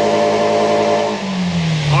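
2000 Toyota Previa's 2.4-litre four-cylinder engine held at high revs under throttle, then revs falling away about a second in. The engine revs freely again now that its mass airflow sensor has been cleaned.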